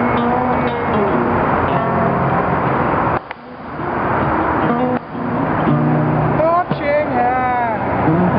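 A man singing a blues song and strumming an acoustic guitar over a steady haze of highway traffic. His voice holds long sliding notes near the start and again near the end, and the sound drops away briefly about three seconds in.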